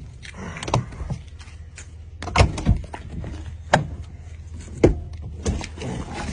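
A pickup truck's door latch and lock being worked: several sharp clicks and knocks as someone tries again to open the locked door.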